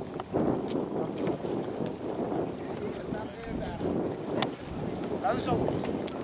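Wind buffeting the microphone in a steady low rumble, with faint voices in the background near the end and a single sharp click a little after four seconds in.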